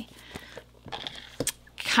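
Soft handling noises of small cardboard game boxes: light rustling and a single sharp knock about a second and a half in.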